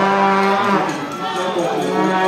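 A long, low, drawn-out boo from the crowd, held on one steady pitch: loudest for its first second, then weaker held tones carry on.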